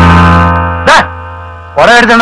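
Film background-score sting: a sustained low chord that starts loud and slowly fades, with a brief spoken word about a second in and speech picking up again near the end.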